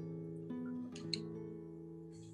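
Background acoustic guitar music: plucked notes that ring and slowly fade, with a new note struck about half a second in.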